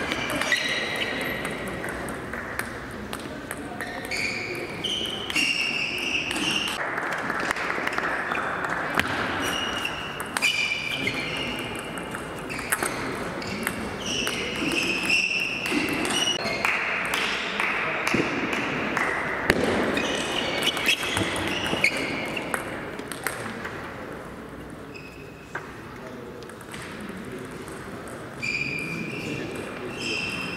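Table tennis rallies: a celluloid-type ball clicking off rubber-covered bats and the table in quick strings of strokes, with short high squeaks and voices around a large hall. It goes quieter between points near the end.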